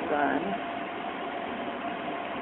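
Steady hum of a cryostat's refrigeration unit running, with a faint constant tone in it. A short spoken syllable comes right at the start.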